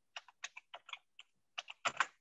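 Typing on a computer keyboard: a run of quick, uneven key taps, about five a second, faint.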